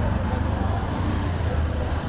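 Street traffic noise: vehicle engines running with a low, steady rumble under a hiss of road noise.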